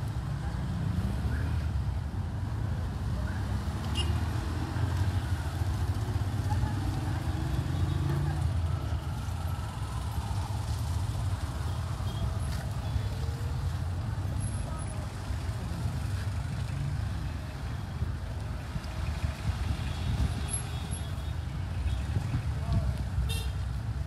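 Street crowd noise: many voices talking at once, none clear, over a steady low rumble.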